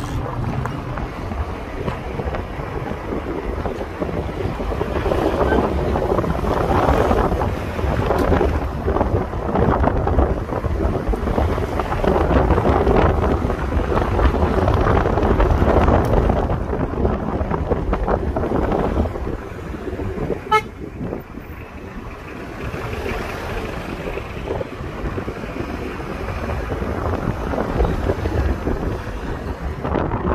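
Road and wind noise inside a moving car: a steady low rumble and hiss that grows louder and then eases off. About two-thirds of the way through, a vehicle horn gives one short toot.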